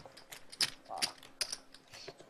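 Poker chips clicking together as they are handled at the table, in a quick irregular run of sharp clicks.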